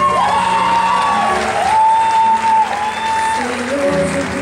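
Live band music: a melody of long held notes, each sliding up into pitch, over piano accompaniment, with audience applause mixed in.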